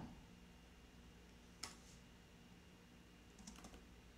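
Near silence with a few faint computer keyboard clicks: one sharper key press about one and a half seconds in, and a few light taps near the end, as code is edited.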